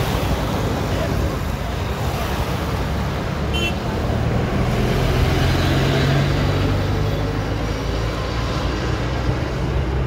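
Motor-vehicle engines and tyre noise on a road, a steady low engine hum that swells around the middle as a vehicle passes.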